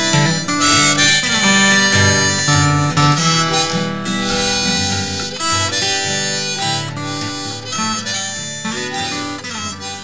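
Harmonica and acoustic guitar playing the instrumental ending of a country song, gradually getting quieter toward the end.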